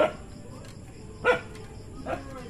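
A dog barking: two short barks, the second a little over a second after the first.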